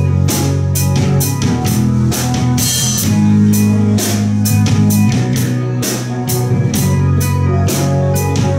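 Live rock band playing an instrumental passage: electric guitar and bass guitar over a drum kit, with steady cymbal and snare strikes about three a second. Loud, with no singing.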